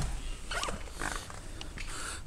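Rustling and a few soft clicks from a handheld camera being moved, over a steady low rumble.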